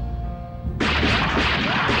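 Cartoon soundtrack music, then a sudden loud, harsh burst of noise under a second in that carries on to the end.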